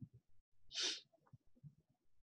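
A single short, hissy burst of breath from a person, lasting about a third of a second, about three-quarters of a second in. Faint low knocks and taps come before and after it.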